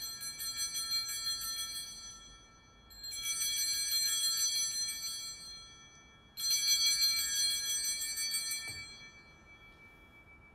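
Altar bells rung three times during the elevation of the chalice after the consecration, each a rapid jingling peal that fades over two to three seconds.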